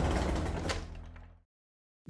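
Tail of a short intro logo sting with a low sustained chord and a light hit under a second in, fading out about one and a half seconds in.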